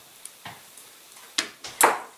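A few light clicks and knocks from handling a hand winder and a wound rubber motor at a wooden table: scattered small ticks, then sharper knocks with the loudest just before the end.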